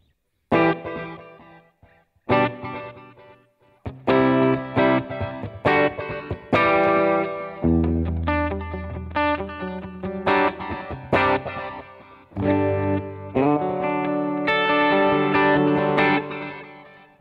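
Stratocaster-style electric guitar played through a Line 6 Helix multi-effects unit with a stereo delay, picked notes and chords in short phrases whose repeats ring on behind them.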